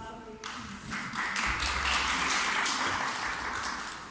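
Audience applauding in a hall, a short burst of clapping that swells about a second in and eases off near the end.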